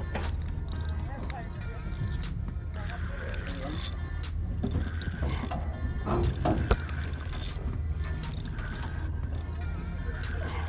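Spinning reel being cranked to bring in a hooked fish, its gears clicking rapidly and unevenly over a steady low rumble, with one sharp knock about two-thirds of the way through.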